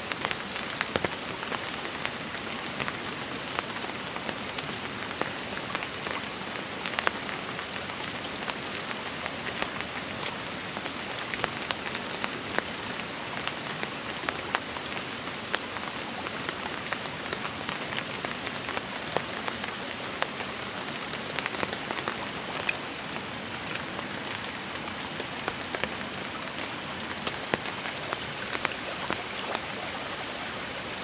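Steady, moderate rain, not very heavy, with many sharp drop ticks scattered through it.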